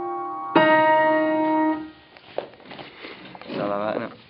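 Grand piano: a held chord, then a new chord struck about half a second in that rings until it is damped short at about two seconds. Light knocks follow.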